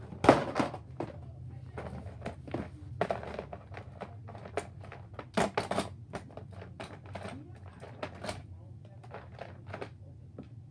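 Handling noise: scattered light knocks and clicks as the phone camera and plastic toys are moved about, with short rustles, over a low steady hum.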